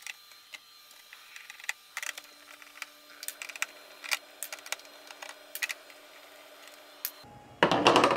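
Hand screwdriver backing out small screws from an all-in-one computer's stand mount: scattered light clicks and ticks of the bit and screws. Louder handling noise near the end.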